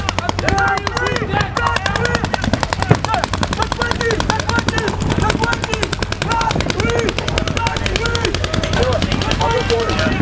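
Paintball markers firing in rapid, continuous streams of shots, many per second, with voices calling out over them.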